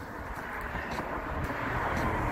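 Highway traffic: a steady rush of passing vehicles that slowly grows louder.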